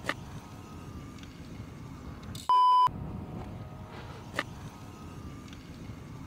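A single steady high-pitched beep about two and a half seconds in, lasting under half a second and replacing all other sound, like an edited-in censor bleep. Around it, a low steady rumble of wind on the microphone, with two short sharp clicks, one near the start and one about four seconds in.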